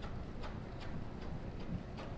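A dressage horse's hooves striking the sand footing of an indoor arena in trot: short, even beats at about two and a half footfalls a second.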